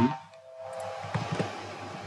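Two computer mouse clicks about a quarter second apart, after a faint, brief steady tone, over a low electrical hum.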